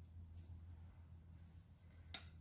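Near silence: room tone with a low steady hum and faint light scratching.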